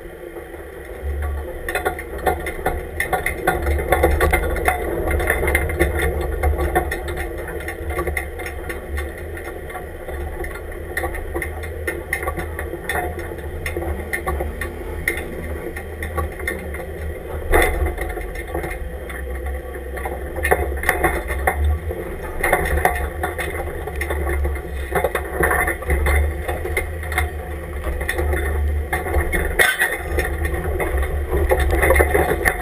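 Lifted off-road truck crawling slowly over sand and rock, heard from a camera mounted on its side: a steady low engine and drivetrain rumble with frequent rattles and knocks from the body, cage and suspension.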